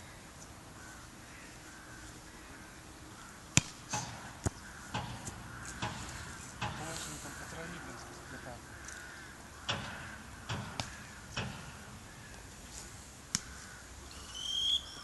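Sharp slaps of a volleyball being struck and caught by hand, about ten scattered smacks, one much louder than the rest a few seconds in.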